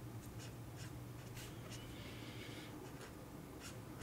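Black felt-tip marker drawing on paper: a series of faint, short strokes.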